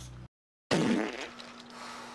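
A fart that starts suddenly a little under a second in, after a moment of dead silence, loud at first and falling in pitch as it dies away over about half a second, followed by a faint steady hum.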